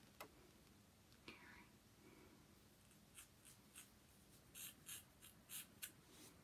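Faint scissors snipping through hair, about eight short crisp snips in the second half, after the rustle of hair being handled.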